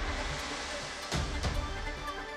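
Background music from a news broadcast: steady held tones over a low bass pulse, with a deeper hit about a second in.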